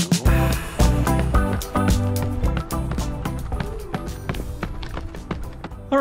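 Background music with a steady beat and pitched instrumental lines.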